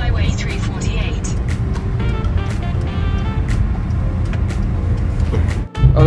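Steady low rumble of a car driving, heard from inside the cabin, with faint music and voices underneath. The sound cuts out briefly near the end.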